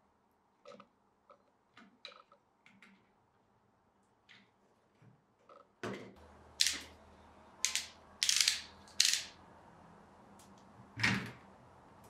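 Faint small clicks of a screwdriver turning screws into the plastic motor shell of a bike trainer's resistance unit. From about halfway, several louder short scrapes and rubs of hands handling the plastic unit come over a faint low steady sound.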